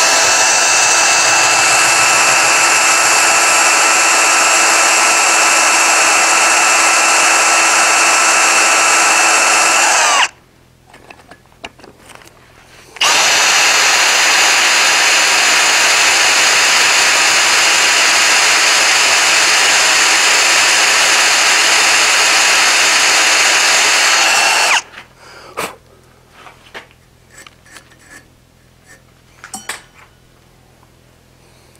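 Cordless drill running at a steady speed as it bores a 15/64-inch hole into the mouth of a forged iron dragon head held in a vise, in two long runs of about ten and twelve seconds with a short pause between. A few faint taps follow near the end.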